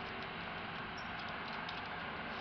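Steady outdoor background hiss with a few faint, brief high-pitched ticks scattered through it.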